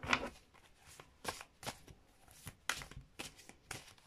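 A deck of oracle cards being shuffled by hand: about a dozen short, sharp card sounds at an uneven pace.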